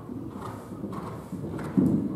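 Horse's hooves cantering on sand arena footing in a repeated beat on the approach to a jump, with one louder thud near the end as it takes off.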